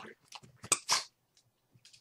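Dogs play-biting and mouthing at each other and a plush toy: a few faint clicks, then two short sharp snaps just under a second in.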